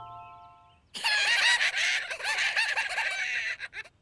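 Cartoon cockroaches cackling with high-pitched laughter, several voices together, starting about a second in and lasting nearly three seconds, after a chime note dies away.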